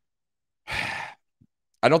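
A man's short sigh: one unpitched breath lasting about half a second, in a pause before he speaks.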